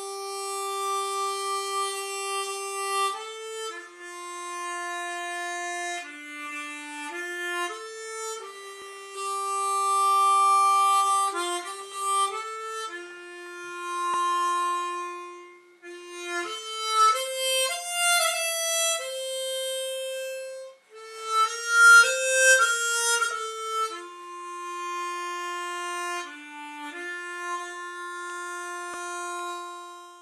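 Harmonica playing a slow melody of long held notes, with a passage of quicker, shorter notes in the middle.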